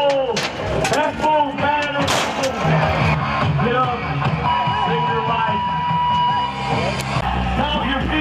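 Shouting voices and music over an arena's sound, with a steady, pure tone held for about two seconds a little past the middle.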